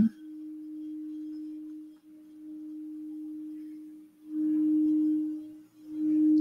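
Quartz crystal singing bowl sung by circling a mallet around its rim: one steady pure tone held throughout, ebbing and swelling in waves about every two seconds and growing louder near the end.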